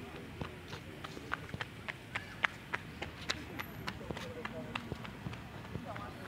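Footsteps on paved ground: sharp, irregular clicks several times a second, over faint, indistinct voices of people some way off.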